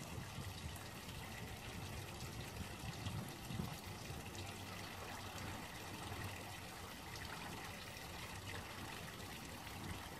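Water running and trickling steadily at a low level.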